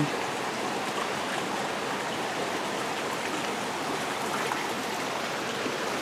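Small rocky mountain creek flowing: a steady, even rush of water.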